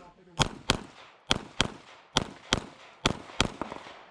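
Eight shots from a CZ Shadow 2 pistol, fired as four quick pairs about a third of a second apart, with the pairs just under a second apart. Each shot cracks sharply and is followed by a brief echo.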